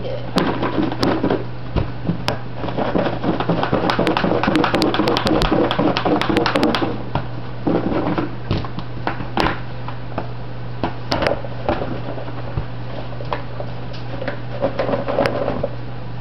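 Sliced okra rounds tumbling and rattling in cornmeal-and-flour breading inside a lidded plastic container shaken hard, a dense clatter for about seven seconds, followed by scattered separate knocks and clicks as the container is handled.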